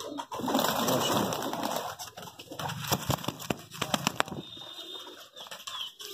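Domestic pigeons cooing, with a few sharp clicks about halfway through.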